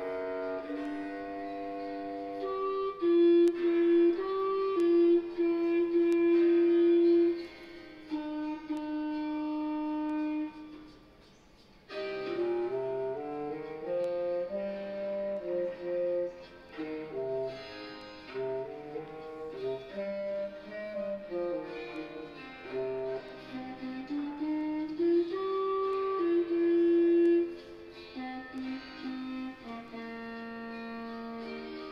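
Clarinet and bass clarinet playing a pop melody in layered parts, a recorded performance played back through a sound system. The music breaks off briefly about eleven seconds in.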